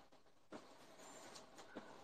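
Near silence between speakers, with one faint click about half a second in.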